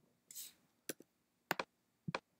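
Computer mouse clicking: two quick press-and-release pairs about half a second apart, with a brief soft hiss just before them.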